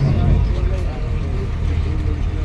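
Low, steady engine and road rumble inside a moving vehicle, with people talking over it.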